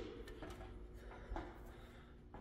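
Quiet room tone in a large, empty warehouse hall. A shout's echo dies away at the start, and there are a couple of faint clicks.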